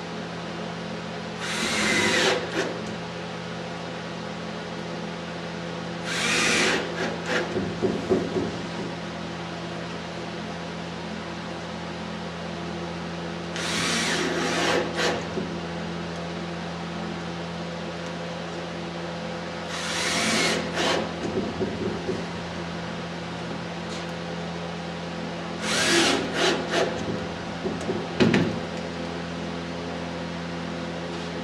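Cordless drill driving number six wood screws through thin plywood batten strips into a wing's plywood skin. Five short runs of about a second each, several seconds apart, with small knocks in between.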